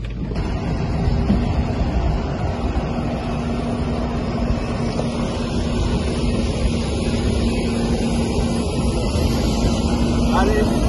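Tracked excavator running: a steady, loud engine drone with a constant low hum, starting just after the opening.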